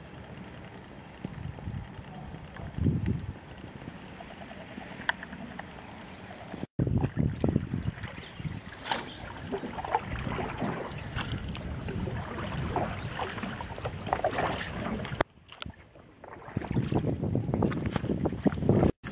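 Touring canoe being paddled through floodwater: irregular paddle splashes and water sloshing against the hull, with wind rushing over the microphone. The sound is quieter at first, then breaks off abruptly about a third of the way in and comes back louder, with a brief quiet dip near the end.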